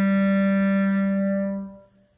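Solo clarinet, played by a young boy, holding one long steady low note that fades away after about a second and a half.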